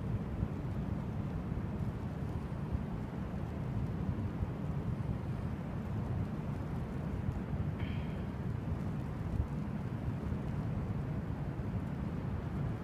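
Wind blowing across the phone's microphone: a steady low rumble.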